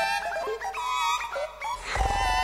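Synclavier digital synthesizer music: a busy line of short synthesized notes that bend and slide in pitch, with a brief noisy swell near the end.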